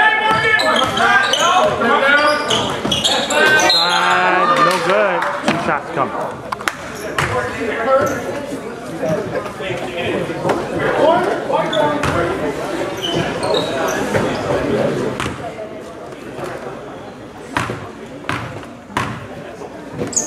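Voices of players and people courtside in a gymnasium, with a basketball bouncing on the hardwood court a few times near the end.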